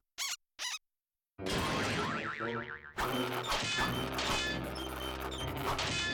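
Cartoon sound effects and score: a sudden loud hit about a second and a half in, with a wobbling boing. Orchestral cartoon music follows from about three seconds in.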